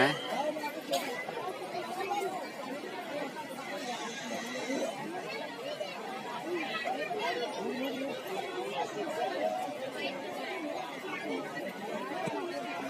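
Crowd chatter: many people talking at once, a steady hubbub with no single voice standing out.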